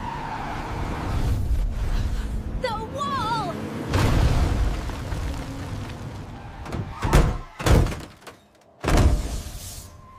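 Cartoon sound effects of an emergency stop in a driving simulator: a short wavering cry about three seconds in, then a loud rushing noise, then three heavy thuds near the end.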